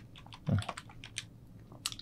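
Computer keyboard typing: a handful of scattered, separate key clicks.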